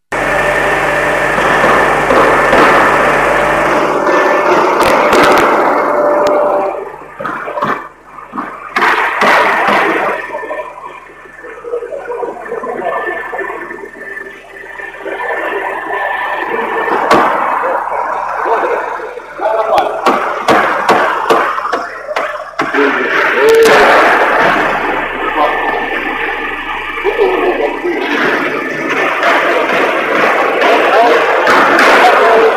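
Factory-floor noise: dense clatter with irregular sharp knocks over a faint steady hum, and indistinct voices. It comes in abruptly at full level.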